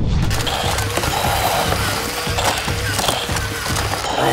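Background music with a steady beat over die-cast toy cars rattling and rolling along plastic track, with many quick small clicks.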